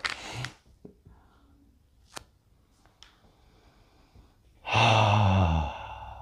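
A man's long, loud voiced sigh of approval about three-quarters of the way through, lasting about a second and trailing off into softer breath, after smelling freshly opened cannabis buds. Before it, a few faint clicks and crinkles of the opened pouch being handled.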